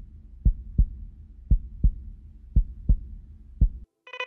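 Heartbeat sound effect: low double thumps, one pair about every second, over a faint low hum.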